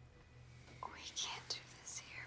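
Quiet, breathy whispered speech begins about a second in: a few hushed words at close range.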